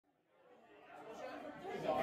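Silence, then faint chatter of people talking, fading in about a second in and growing louder.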